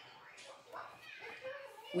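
Faint voices in the background, well below the level of a nearby speaker.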